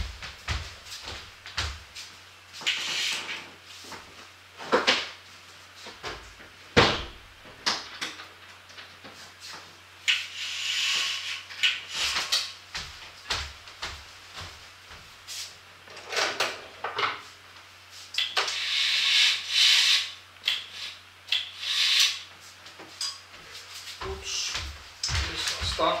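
Window or balcony door being shut and latched: a run of knocks, clicks and short rustling swishes, over a faint steady hum.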